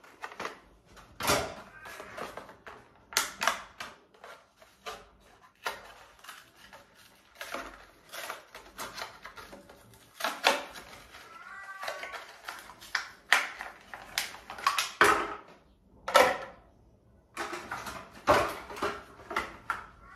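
Irregular clicks, taps and rustles of small plastic items and packaging being handled and put away, some sharper knocks among them.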